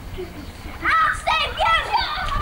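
A child's high-pitched voice calling out in a quick run of three or four short rising-and-falling cries, starting about a second in.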